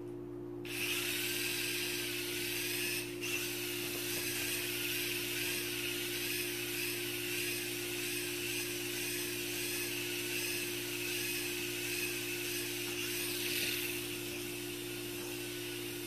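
Sky Rover Aero Spin toy drone's small electric motors and propellers spinning up about a second in, then whirring steadily in flight with a slightly wavering pitch.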